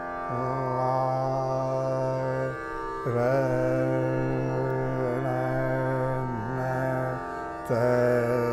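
A male voice singing Dhrupad in long held notes with slow ornamental glides over a steady tanpura drone. The singing breaks briefly about three seconds in and again near the end, each time coming back in louder.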